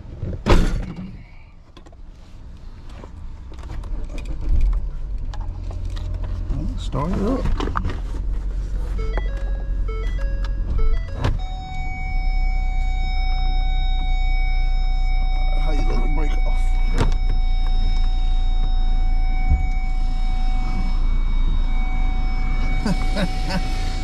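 A Ford car's engine running, heard from inside the cabin. About ten seconds in there is a short run of dashboard chimes, followed by a steady electronic warning tone that holds to the end.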